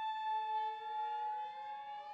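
Flute holding one long steady note. A lower instrument enters beneath it just after the start and slides slowly upward in a long rising glissando.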